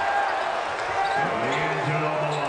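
Basketball broadcast sound: a steady arena crowd hubbub, with a voice coming in about a second in.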